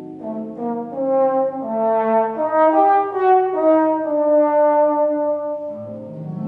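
Alto trombone playing a slow, connected melodic phrase that climbs note by note and then steps back down, dying away just before the end.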